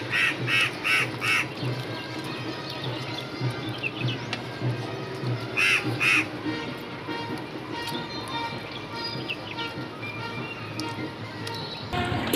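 Short animal calls in a quick run of four, then two more about halfway through, over steady background music.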